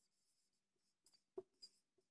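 Felt-tip marker writing on a whiteboard, very faint: short scratchy strokes with a few light ticks of the tip against the board past the middle.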